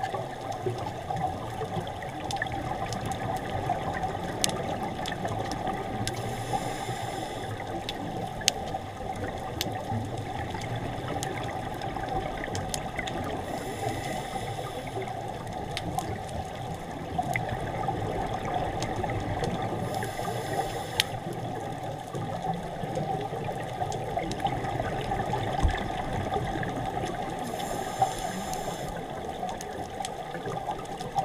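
Underwater sound picked up through a camera housing: a steady muffled rush of water, with a scuba diver's regulator hissing in a breath about every seven seconds and scattered sharp clicks.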